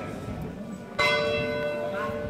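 A single strike on the bell mounted on a processional throne, about a second in. Its tone rings on and slowly fades. In Málaga processions such a bell stroke is the signal to the bearers to lift or halt the throne.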